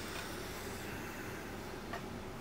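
Steady low room hiss with soft handling of a knitted wool scarf and one small click near the end.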